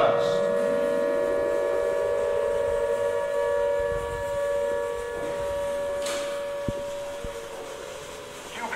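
A siren-like wail: a chord of steady tones held and slowly fading, with a further tone rising in pitch over the first few seconds. A single sharp click sounds near the end.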